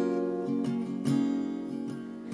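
Acoustic guitar strumming chords, with a fresh strum about every half second, growing slightly quieter toward the end.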